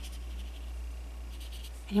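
Soft strokes of a damp round watercolour brush moving across paper as a pale wash is smoothed out, over a steady low hum. A woman's voice starts just at the end.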